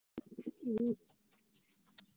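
A domestic pigeon cooing once, a short coo that steps between two pitches in the first second. Two sharp clicks, one just as the sound starts and one during the coo; faint light ticking follows.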